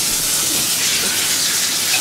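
Shower running into a bathtub: a steady, loud hiss of spraying water.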